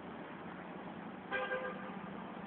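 A short horn toot, one steady-pitched note lasting about half a second, sounds about a second and a half in over a steady background hiss.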